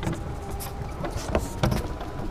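Camera being handled on a tabletop: a few short soft knocks and scrapes over a low steady background rumble.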